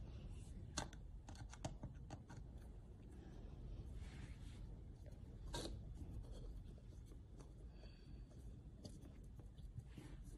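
Faint handling noise of a small screwdriver on a fuel level converter's calibration screw and of fingers on its wiring: light scratching with scattered small clicks, the sharpest a little past halfway.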